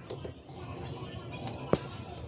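Hands handling the plastic dash trim panel of a C7 Corvette, a faint rustle with one sharp plastic click near the end.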